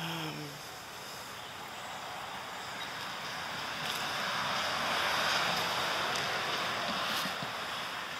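Road traffic going by: a rushing noise that builds over several seconds, peaks about five seconds in, then fades.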